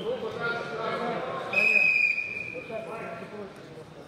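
Referee's whistle blown once, a steady shrill note lasting just under a second, about one and a half seconds in, over men's voices in the hall.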